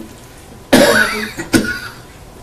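A person coughs twice, loudly: a longer first cough about two-thirds of a second in and a shorter second one about a second and a half in.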